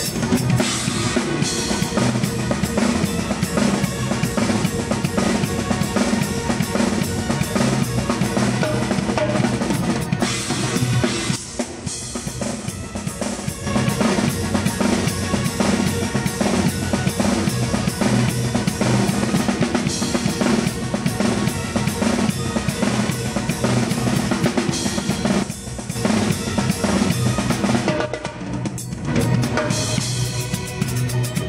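Drum kit played live in a steady, driving rhythm: bass drum, snare and cymbals, heard up close from the kit. The playing eases briefly about a third of the way in and again near the end, then picks back up.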